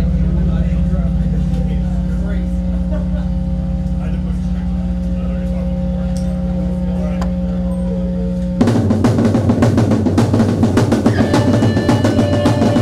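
Live rock band with drum kit and electric guitars. A steady, low sustained drone rings out from the amplified instruments, then about two-thirds of the way in the full band comes in suddenly and louder, with fast drumming.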